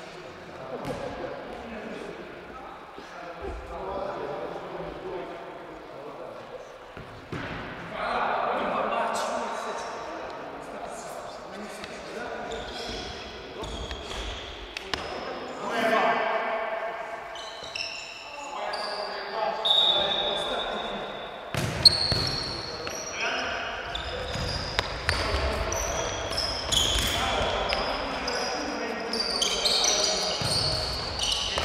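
Echoing sports-hall sound of an indoor futsal game: players' indistinct voices, ball thuds, and short high sneaker squeaks on the court floor that grow more frequent as play resumes in the second half. A single sharp knock stands out about two-thirds of the way in.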